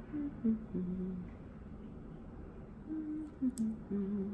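A woman humming to herself in short, low wordless phrases, two bouts with a pause between them, and a small sharp click near the end.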